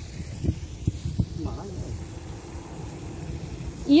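Outdoor background with a steady low rumble on the microphone, a few light knocks and faint voices in the distance; a woman's voice starts at the very end.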